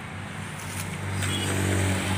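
A vehicle engine running at a steady pitch, getting louder about a second in.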